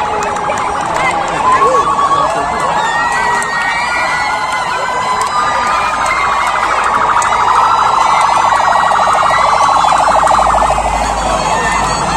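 Police siren wailing and pulsing as a police pickup approaches, louder in the second half, over the chatter and shouts of a roadside crowd.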